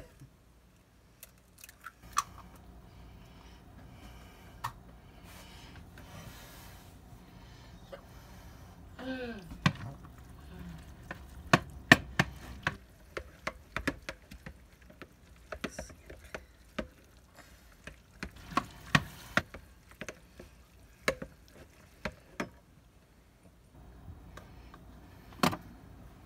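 Metal spoon stirring and scraping browned ground beef and raw egg in a glass mixing bowl, with many sharp clinks of the spoon against the glass.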